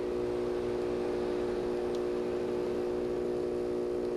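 Breville Barista Express's vibratory pump humming steadily as it pushes water through the puck during a pre-infusion shot, holding about 6 bar against a very fine grind that is nearly choking the flow.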